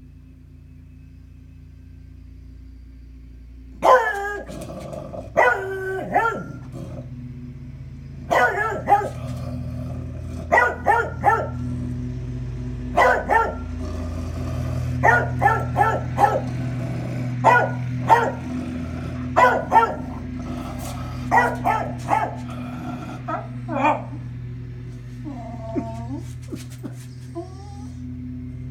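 A dog barking repeatedly at the window, in single barks and quick runs of two or three, starting about four seconds in. A steady low hum runs underneath.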